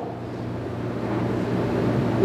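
Steady hiss with a constant low hum underneath: the background noise of the room and its microphone.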